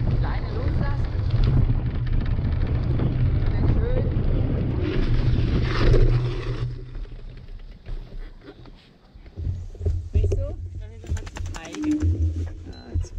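Wind buffeting on the microphone and the rumble of a mountain bike's tyres rolling over a dirt path, heavy and low, dying down about two-thirds of the way through as the bike slows to a stop.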